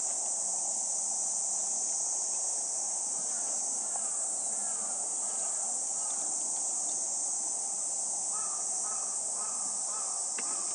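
Insects droning steadily in a loud, high-pitched chorus, with a few short calls near the end.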